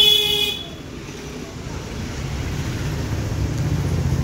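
A vehicle horn toots briefly at the very start, then the low rumble of traffic builds and holds.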